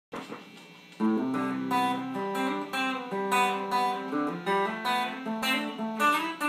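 Rickenbacker electric guitar played alone, picking a chord progression with ringing notes that change every half second or so. The guitar comes in about a second in.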